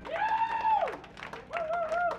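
Audience clapping in scattered applause at the end of a live band's song. Two high whooping cheers rise above it: a long one in the first second and a shorter, wavering one near the end.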